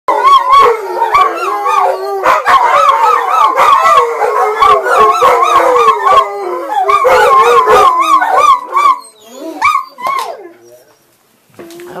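Several dogs howling together in a warbling chorus, their pitches wavering up and down, with short sharp barks mixed in. The howling dies away about nine seconds in, followed by two brief yelps.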